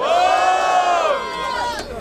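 A crowd of spectators cheering and yelling together in one long sustained shout that fades out near the end. This is a vote by noise for one of the battling MCs.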